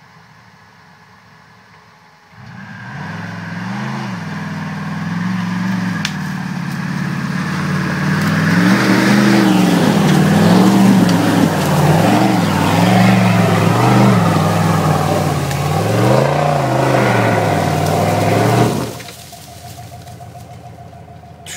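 Modified Jeep Wrangler's engine revving hard under load as it claws up a steep muddy gully, its pitch rising and falling again and again, with a hiss of tyres spinning in mud. It comes in about two seconds in, grows louder, and cuts off suddenly near the end.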